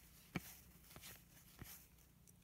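Near silence with a few faint, soft clicks of cardboard baseball cards being handled and flipped through a stack, the sharpest about a third of a second in.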